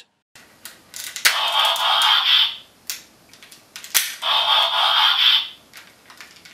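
The Transformers Animated Ultra Magnus toy's built-in electronic transformation sound effect plays twice, each time for about a second. Each is set off by a sharp plastic click as a shoulder joint locks or unlocks, with a few small plastic clicks from handling in between.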